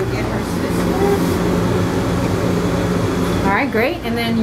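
A steady low machine hum, with a person's voice coming in near the end.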